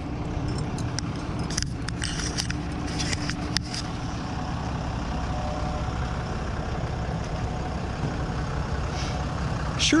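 A motor vehicle engine running steadily at idle, a low even rumble, with a few light clicks in the first few seconds.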